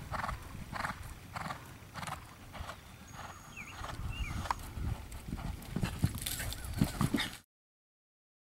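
Holsteiner gelding cantering on sand arena footing: muffled hoofbeats and breathing in an even rhythm of about one and a half strides a second. The sound cuts off abruptly near the end.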